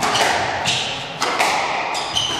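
Squash rally: the hard rubber ball cracking off rackets and the court walls, several sharp knocks ringing in the reverberant court, with short high squeaks of players' shoes on the wooden floor.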